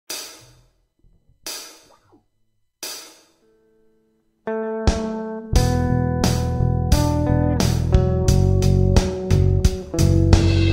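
Opening of a blues-rock song: three evenly spaced cymbal strikes, then a guitar chord rings out, and about five and a half seconds in the full band comes in with bass and a steady drum beat.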